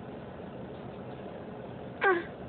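Steady hum and hiss of a car, heard inside the cabin, with no distinct events.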